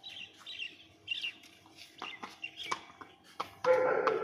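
Small birds chirping, with a few sharp clops of a horse's hooves on brick paving. Near the end comes a loud dog bark.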